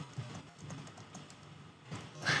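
Quiet typing on a computer keyboard: a quick run of keystroke clicks as a short message is typed.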